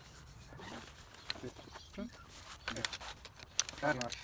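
Aluminium poles of a folded lightweight camp chair clinking and rattling as the chair is pulled from its fabric carry bag, with fabric rustling. Soft rustle first, then a cluster of sharp metallic clicks in the second half, the loudest near the end.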